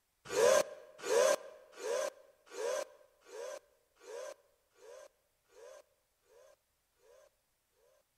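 At the end of the song, a single short breathy cry with a rise-and-fall pitch is repeated by an echo effect about every three-quarters of a second. It fades step by step and dies away after about seven seconds.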